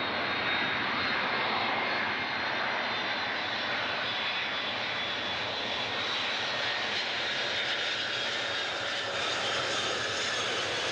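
Boeing 747's four turbofan engines running at approach power as the jumbo jet passes low overhead on final approach with gear down: a steady jet roar with a faint whine, dropping slightly in pitch in the second half as it goes by.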